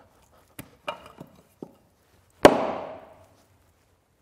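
A small hand-forged axe struck hard into a wooden chopping stump: a few light knocks, then one loud whack about two and a half seconds in that rings and fades. The blows test the freshly wedged head for looseness.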